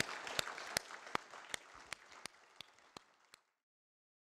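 Audience applauding, the clapping thinning out and fading until the sound cuts off about three and a half seconds in.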